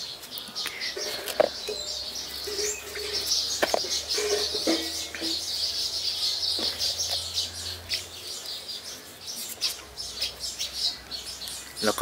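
Birds chirping continuously in the background, with a few faint clicks, the sharpest about a second and a half in.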